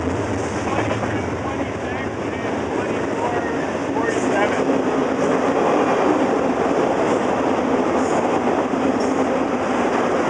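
Freight train cars rolling past: steady noise of steel wheels on the rails, growing a little louder about four seconds in.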